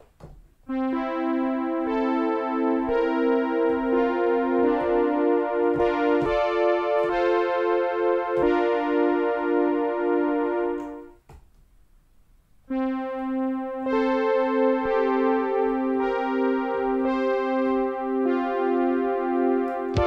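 Soft electric-piano-like synth chords playing back from a sequenced pattern on a Novation Circuit Tracks, each chord repeated in quick even pulses and changing every second or two. The pattern stops about eleven seconds in and starts again about two seconds later.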